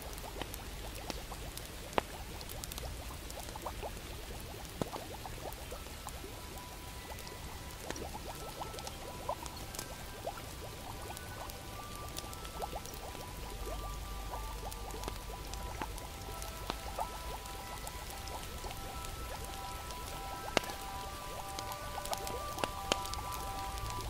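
Fire crackling with scattered sharp pops over a steady rain hiss and a low rumble. Soft held music notes come in about halfway through.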